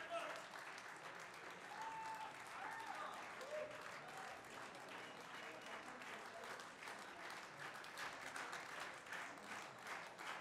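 Concert audience applauding steadily, with a few voices calling out from the crowd early on.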